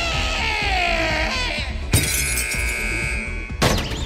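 A woman's long scream, falling in pitch, over dramatic film music. About two seconds in, a sudden crash cuts it off and is followed by a steady high tone for about a second, then another sharp crash near the end.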